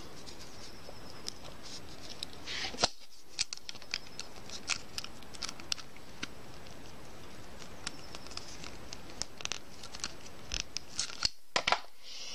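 Scattered light clicks and scrapes of a metal end hook being pushed onto the cut end of a nylon zipper and crimped shut with slip-joint pliers, over a steady background hiss.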